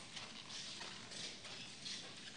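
Faint, irregular footsteps and shuffling of people moving about on a hard floor in a reverberant chapel.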